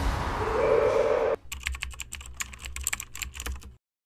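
Computer keyboard typing: a rapid, irregular run of key clicks over a low hum. It starts after a second and a half of loud, noisy sound that cuts off abruptly, and stops just before the end.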